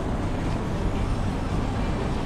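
Steady low rumbling background noise with a hiss over it, even throughout, with no distinct events.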